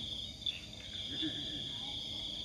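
Crickets chirring steadily at a high pitch.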